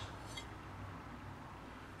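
Quiet room tone with a faint low hum, and a single faint light click about a third of a second in as a metal rafter square is handled.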